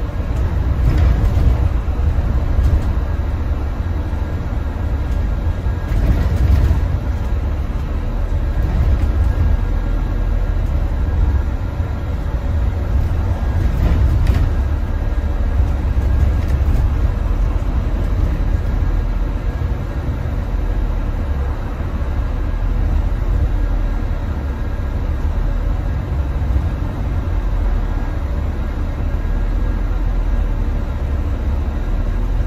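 Double-decker bus in motion heard from the upper deck: a steady low engine and road rumble, with a couple of faint knocks.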